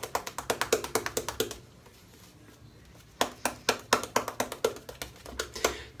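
Shaving brush working lather over the face in quick strokes, about nine a second, in two runs with a short pause between.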